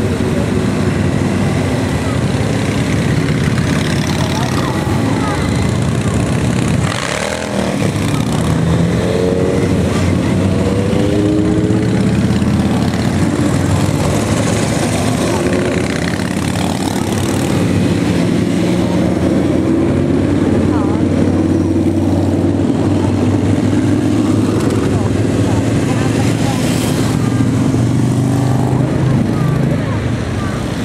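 A long column of motorcycles, mostly cruisers, riding past in a continuous stream, their engines running together in a loud, steady drone. The pitch of individual bikes rises and falls as they pass.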